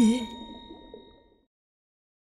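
The end of a children's song: the last sung note stops, a bell-like chime rings on and fades out within about a second, and then there is silence.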